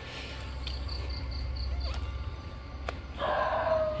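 An insect chirping: a quick run of about six high-pitched pulses, roughly five a second, lasting just over a second, over a steady low rumble.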